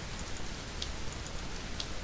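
Steady hiss of a recording microphone's noise floor, with two faint clicks about a second apart.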